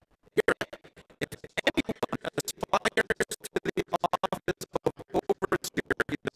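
A man's speaking voice chopped into rapid stuttering fragments, about ten a second, so the words cannot be made out. This is the sign of a digital audio glitch breaking up the sermon's sound. The chopping starts a moment in.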